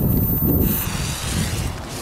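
Wind rumbling on the microphone, with a faint hiss from about half a second in as a firecracker's fuse, just lit with a plasma lighter, catches and burns.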